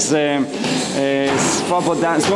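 A man talking, with one drawn-out syllable held at a level pitch about a second in.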